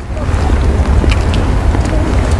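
Wind buffeting the microphone: a loud, uneven low rumble that rises and falls throughout.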